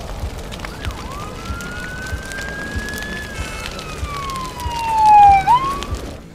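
A siren wailing: one slow rise in pitch over about two seconds, then a longer, falling glide that grows louder, turning sharply upward again near the end.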